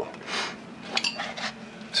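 Light metallic clinks and handling noise, with one sharp click about halfway through.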